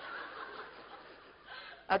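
Audience in a hall chuckling quietly, a soft spread of laughter with no single voice standing out, in reaction to a joke.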